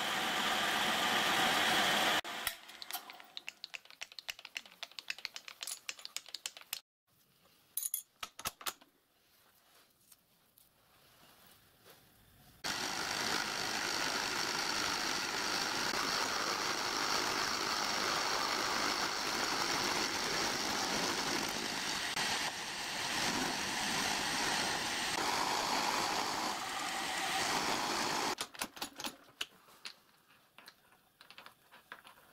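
Milling machine drilling through a small steel part clamped in the vise, then scattered light clicks and knocks. About twelve seconds in the machine runs again, an end mill cutting the end of the part steadily until near the end, when it stops and metal clicks as the part is handled in the vise.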